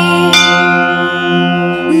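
Indian devotional music between sung verses: a steady drone, with a bell-like note struck about a third of a second in that rings and slowly fades.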